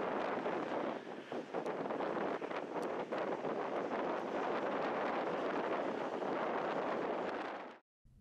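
Strong wind rushing over the microphone with uneven gusts: the storm's inflow winds blowing in beneath the wall cloud. It cuts off suddenly near the end.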